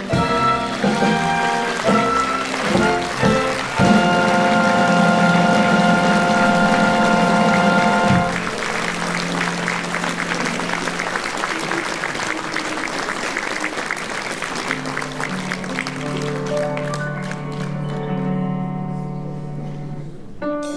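Small theatre orchestra playing operetta music: a few short chords, then a loud held chord that cuts off about eight seconds in. Audience applause follows while the orchestra carries on softly with low held notes underneath, the clapping dying away near the end.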